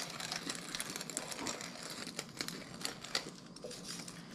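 Hand-twisted pepper mill grinding black peppercorns: a quick, uneven run of small crunching clicks.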